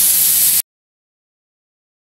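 Airbrush spraying a brief, light burst: a steady hiss for about half a second that cuts off abruptly into dead silence.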